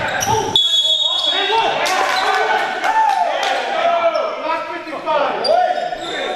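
Basketball bouncing on a hardwood gym floor during play, with indistinct voices echoing in the large gym.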